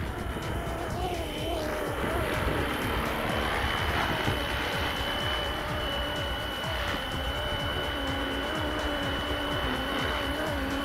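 Electric RC helicopter (a 3D-printed BO-105 running Flywing Bell 206 electronics) landing: a steady high motor whine with a lower wavering rotor hum as it descends, sets down on grass and keeps its rotor spinning on the ground. Wind rumbles on the microphone underneath.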